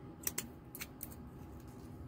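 A few short, sharp plastic clicks and scrapes from a liquid lipstick's doe-foot applicator wand being worked against its small plastic tube, two close together near the start and a few fainter ones after.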